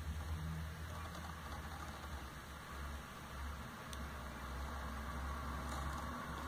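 Steady low hum under an even hiss of background noise, with one faint click about four seconds in.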